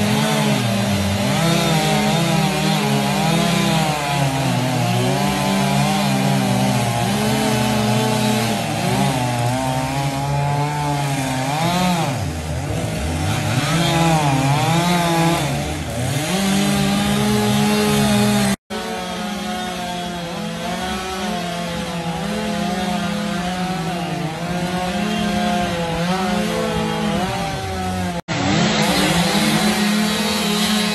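Gas chainsaw cutting into a palm tree stump, its engine pitch rising and falling as it bogs under load and revs back up. The sound breaks off abruptly twice, and is a little quieter between the two breaks.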